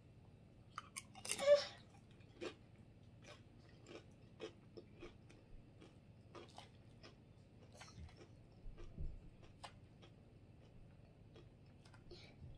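A tortilla chip loaded with spinach dip bitten with one loud crunch about a second in, then chewed with a run of short, crisp crunches about two a second that grow fainter.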